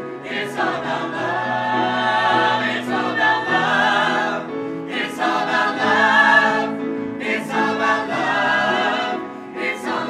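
Musical-theatre cast of about ten singers singing a ballad chorus together with piano accompaniment. They hold long notes with vibrato, in phrases broken by short breaths every two seconds or so.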